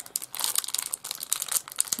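Clear plastic packaging crinkling as it is handled and opened by hand, a dense, irregular run of quick crackles.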